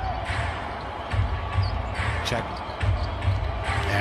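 A basketball being dribbled on a hardwood court, with a player's shouted call of "check".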